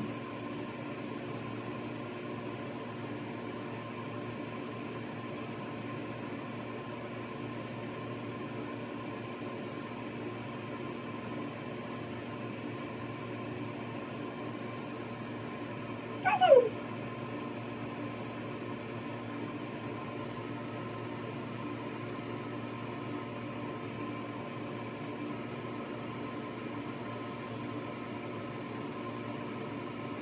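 Steady room hum with several fixed tones in it. About sixteen seconds in comes one short, loud call that falls in pitch.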